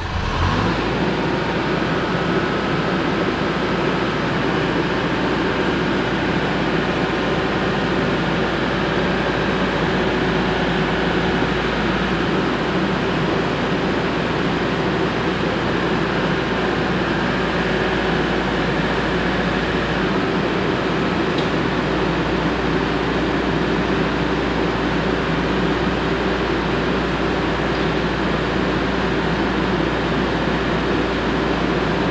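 Engine of the machine holding the truck bed on its boom, started just before and running steadily with an even low drone.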